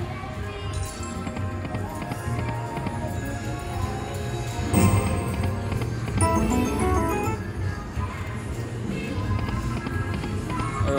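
Lock It Link Hold On To Your Hat slot machine playing its reel-spin music and jingles across repeated spins, with a brief louder sound about halfway through.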